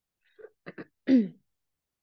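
A woman clearing her throat once, a short sound falling in pitch about a second in, just after a few faint small clicks.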